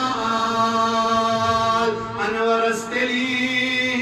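A man's voice chanting a melodic recitation through the microphones, in long held notes with a short breath about halfway through.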